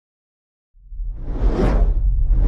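Silence, then about three-quarters of a second in a whoosh sound effect swells in over a deep rumble, peaking just past halfway and easing slightly toward the end.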